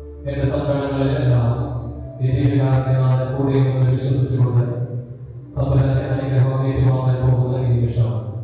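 A man chanting a prayer in long, sustained sung phrases, with short breaks about two seconds and five and a half seconds in.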